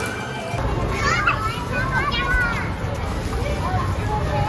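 Children's voices calling out and squealing, high-pitched and loudest between about one and two and a half seconds in, over a steady low background din of a crowded play area.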